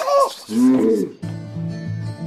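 A person's drawn-out 'oh' cries, the last one lower and longer, fading out about a second in. Steady music begins right after it.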